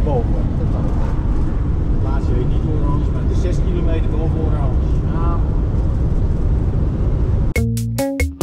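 Steady low road and engine rumble inside a motorhome's cab while it drives along, with faint voices over it. About seven and a half seconds in, it cuts suddenly to music with a beat.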